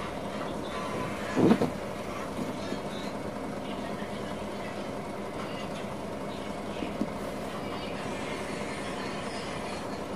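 Steady hum with a few constant tones from a small iron-core step-up transformer driven by a 12 V to 220 V inverter board that is lighting an LED bulb. A brief thump about one and a half seconds in, and a small click near seven seconds.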